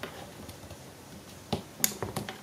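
Three sharp metallic clicks of pliers working a stainless steel tie on a heat-wrapped tube, the last and loudest near the end.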